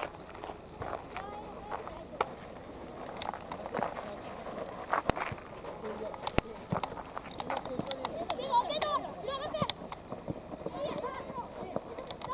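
Young soccer players shouting and calling to each other on the pitch, with a few sharp thuds of the ball being kicked around the middle.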